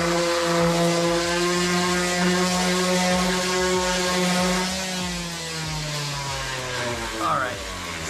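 Electric random orbital sander running steadily while sanding dried wood filler on MDF, a humming motor tone over a gritty hiss. About five seconds in its pitch falls and it gets quieter.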